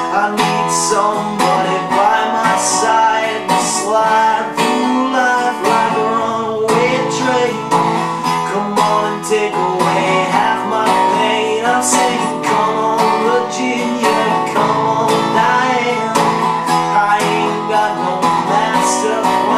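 Resonator guitar strummed in a steady rhythm, full chords ringing between the strokes.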